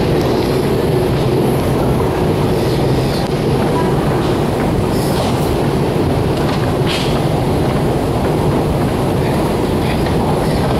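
A long metro escalator running: a steady mechanical rumble and hum, with a few faint clicks about halfway through.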